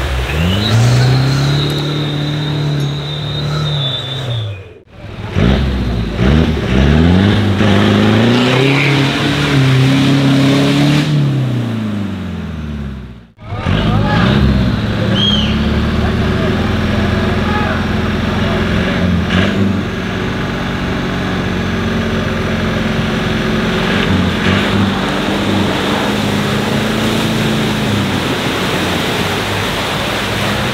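Off-road 4x4 engines revving up and down as the vehicles drive through deep mud, in three shots cut apart at about five and thirteen seconds; in the last stretch the engine runs at a steadier pitch.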